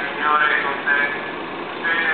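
A crowd of voices reciting a prayer together, dipping briefly in the second half before resuming.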